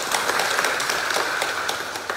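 Audience applauding, many hands clapping together, dying away just as it ends.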